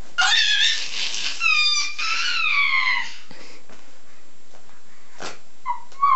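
A seven-month-old baby squealing happily in high-pitched, gliding cries that fall in pitch, lasting about three seconds. A single brief click follows near the end.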